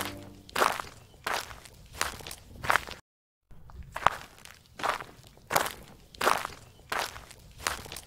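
Footsteps of a person walking at a steady pace on outdoor pavement, about one and a half steps a second, with a brief half-second dropout about three seconds in.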